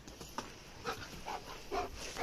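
German Shepherd dog panting during ball play: a few short, soft breaths about half a second apart.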